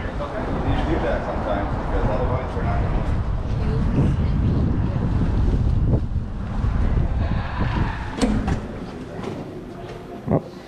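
Wind buffeting and clothing rubbing on a chest-mounted camera's microphone during walking, a steady low rumble. A sharp click about eight seconds in comes as a glass shop door is pulled open, and the noise eases off towards the end.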